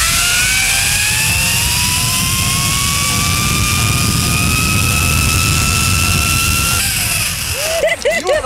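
Zip-line trolley pulleys running along the steel cable: a whine that slowly rises in pitch as the rider picks up speed, over a heavy rush of wind on the microphone. The whine and rush ease off about seven seconds in as the ride slows.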